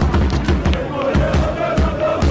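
Football fans singing a club chant together over a steady drum beat, with crowd noise around them.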